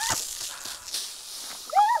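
A girl's short high yelp, then near the end loud high-pitched shrieks that rise and fall in pitch, her excited reaction to the revolver shot bursting the soda bottle.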